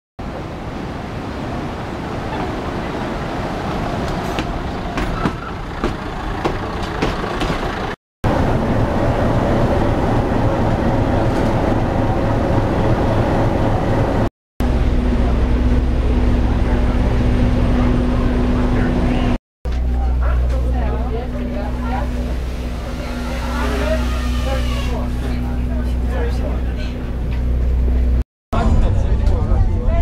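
Railway station sounds across several short takes: a diesel train running in along the platform, then a diesel locomotive idling close by with a steady low hum. Voices in the background, with three brief cuts in the sound.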